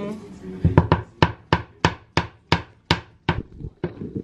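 Metal pelmeni mold being knocked down repeatedly to shake the finished dumplings out: about ten sharp knocks, roughly three a second, starting about a second in.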